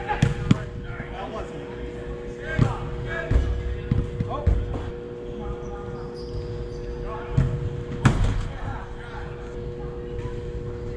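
Soccer ball kicked and bouncing on turf in a large indoor arena: several sharp thuds echo in the hall, the loudest about eight seconds in, with players' shouts between them. A steady hum runs underneath.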